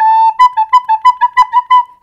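Recorder playing a held note, then a run of short tongued notes alternating between two neighbouring high pitches, about seven a second. Each note is started with the tongue.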